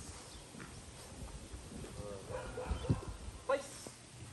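Footsteps thudding on grass as a handler walks a puppy on a leash. A dog gives a brief vocalization about two seconds in.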